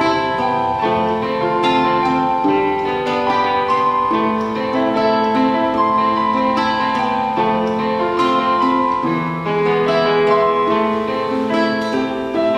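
Acoustic guitar and electronic keyboard playing an instrumental duet together, with held melody notes and chords changing about every second.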